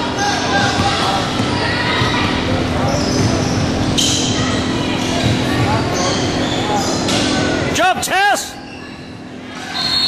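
Basketball bouncing on a hardwood gym court amid crowd and bench chatter in a large hall. About eight seconds in comes a quick run of sneaker squeaks on the floor.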